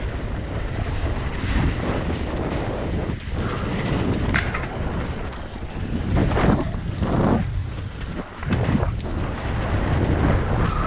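Wind buffeting the camera microphone as an enduro mountain bike descends a dirt forest trail at speed, with the tyres rumbling over the dirt. Several louder surges of noise come in the middle of the run.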